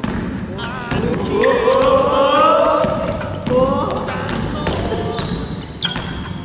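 Basketball dribbled on a wooden gym floor, its bounces sharp and echoing in the hall, with drawn-out voices calling out over the play.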